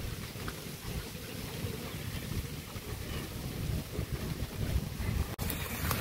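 Wind buffeting the microphone: an uneven low rumble with a faint hiss above it and no clear tone.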